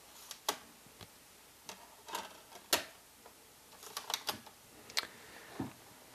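A CD being loaded into a laptop's disc drive: a scattering of sharp clicks and light knocks at irregular intervals as the disc and drive tray are handled.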